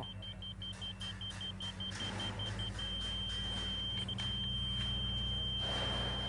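A Stabila D-Tech laser receiver on a grade rod beeps rapidly, then changes to one steady unbroken tone a little under three seconds in. The solid tone means the receiver has reached on-grade, level with the rotating laser's beam. A vehicle engine rumbles low in the background.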